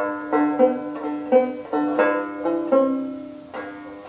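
Four-string Irish tenor banjo strummed in chords, a steady run of two or three strums a second, each ringing out and fading before the next.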